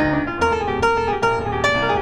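Grand piano tuned to A = 432 Hz, played solo: a quick, lively run of struck notes, each ringing and dying away, over sustained lower notes.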